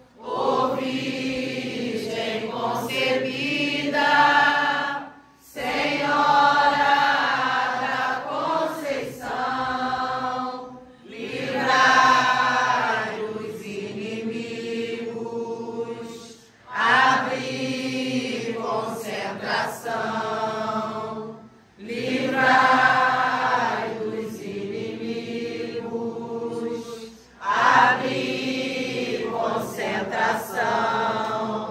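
Umbanda congregation singing a hymn together in unison, with no instruments or drums. The singing runs in long phrases, each ended by a short pause for breath about every five and a half seconds.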